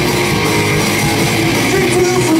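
Live rock band playing loud and steady: distorted electric guitars, bass guitar and a drum kit.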